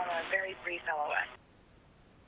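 A voice over the spacewalk radio loop, thin like a telephone line, that stops about a second and a half in and drops to dead silence.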